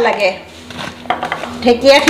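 A few light clicks and clinks of kitchen utensils on a steel plate in a quieter gap. A voice humming fades out at the start and comes back near the end.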